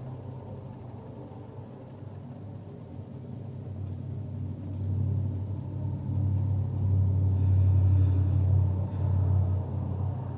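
A low rumble that grows steadily louder from about three seconds in and is strongest near the end.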